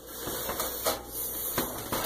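Cloth wiping and buffing a glossy stovetop: a soft rubbing hiss, with a few faint knocks.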